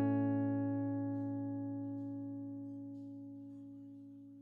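Acoustic guitar's last strummed chord ringing out and slowly fading away.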